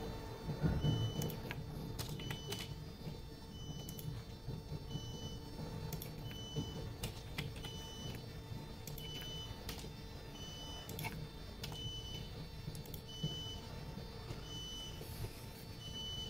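A short high electronic beep repeating steadily about every 1.4 seconds over a constant electrical hum, with scattered computer mouse and keyboard clicks as figures are entered.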